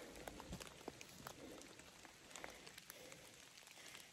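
Near silence: faint outdoor background with a few soft, scattered clicks.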